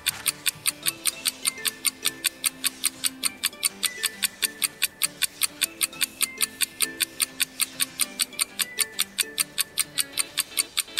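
Countdown timer music: quick clock-like ticks at about five a second over a simple looping melody, marking the seconds running out.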